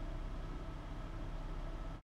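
A steady low rumble with hiss, even throughout and cutting off at the end.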